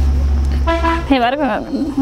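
A short, steady horn toot about three-quarters of a second in, over a low rumble that dies away about a second in; a woman's speech follows.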